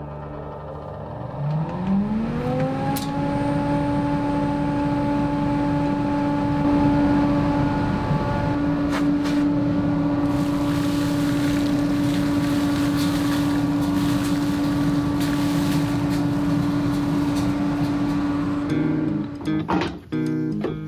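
A dust collector's electric motor and blower are switched on and spin up, rising in pitch over about two seconds, then run with a steady hum over a constant rush of air. There are a few faint clicks.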